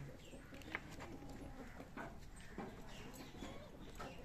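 A few faint, short animal calls.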